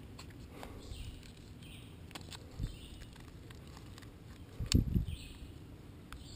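Quiet woodland ambience with faint high-pitched animal calls, light clicks from the shot-up phone being handled close to the microphone, and two dull thumps close together a little before the end.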